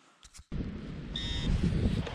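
Wind buffeting the microphone in an open field, starting suddenly about half a second in after near silence, with one short high-pitched electronic beep from the metal-detecting gear about a second later.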